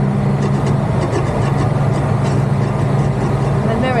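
Lorry's diesel engine running steadily at low revs, heard from inside the cab, a constant low hum while the truck creeps forward.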